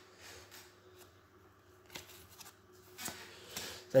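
Playing cards being handled: several soft, brief rustles and slides as cards in the hand are looked through and one is moved onto the table near the end.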